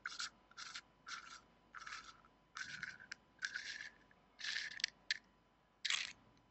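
Stainless steel tank sleeve of a Kayfun 3.1 clone rebuildable atomizer being unscrewed by hand: about nine short, faint scratchy rasps, one with each twist of the fingers on the threaded metal.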